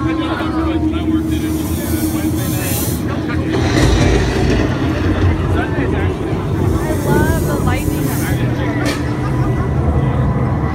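Crowd chatter over a loud, steady low rumble from the scare zone's sound system, with several short hissing blasts from fog effects: about two seconds in, near four seconds, and twice around eight to nine seconds.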